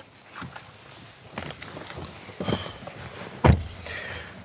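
Rustling and shuffling of a person climbing into a car's rear seat, with one dull thump about three and a half seconds in.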